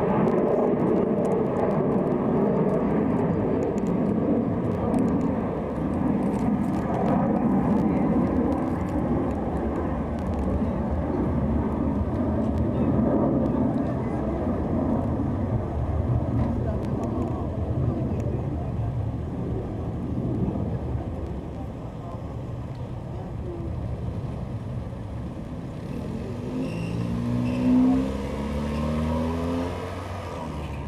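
Street ambience of indistinct voices over a steady low rumble. Near the end, a car engine rises in pitch as it accelerates.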